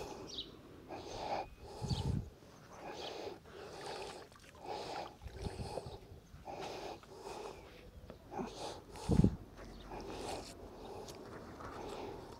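A magnet-fishing rope being hauled in hand over hand: short rhythmic swishing noises about once a second, with a few low thuds.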